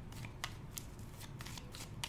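A deck of tarot cards shuffled by hand: quiet, irregular flicks and taps of the cards against each other.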